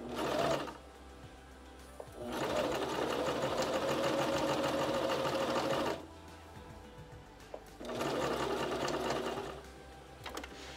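Electric sewing machine stitching a denim strip onto sweatshirt fabric in three runs: a short one at the start, a long run of about four seconds in the middle, and a shorter one near the end. Each run has a steady motor whine under the rapid needle strokes, with pauses between runs as the fabric is repositioned.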